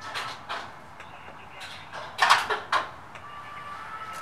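Eiffel Tower lift cabin in motion: a steady running hum with a faint thin whine, broken by short knocks and rattles, the loudest cluster a little over two seconds in.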